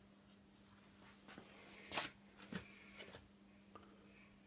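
Faint scrapes and light knocks of a metrology setup being shifted over a granite surface plate, a handful of short sounds with the loudest about two seconds in, over a steady low hum.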